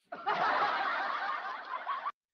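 Breathy laughter with no clear pitch, starting abruptly and lasting about two seconds, fading a little near the end.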